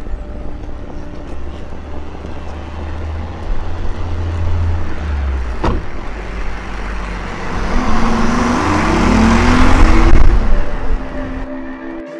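BMW i8 sports car with its engine running low, a single thud about halfway through as a door shuts, then the engine note rising as the car pulls away and passes, loudest shortly before the end.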